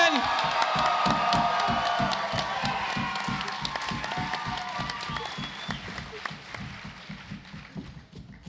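Audience applauding and cheering over walk-on music with a steady beat, the noise dying down steadily toward the end.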